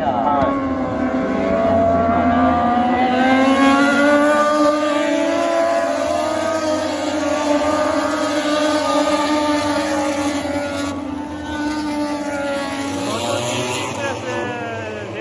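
Several racing motorcycles running past together, their engine notes overlapping and rising and falling as they brake into the corner and accelerate away; loudest a few seconds in.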